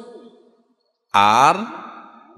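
A man's voice: the tail of a word fades out, there is a short gap of dead silence, then one drawn-out spoken syllable ("aar") that falls in pitch and fades.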